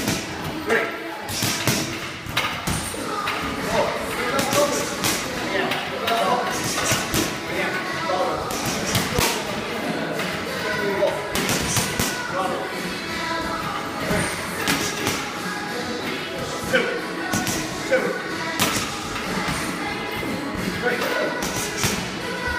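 Boxing gloves striking focus pads in irregular runs of punches, each a sharp smack, over background music and voices.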